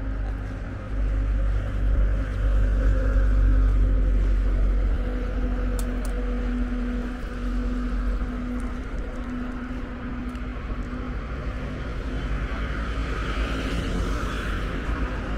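Street traffic: a steady engine hum and low rumble from a passing vehicle, loudest a few seconds in, then easing.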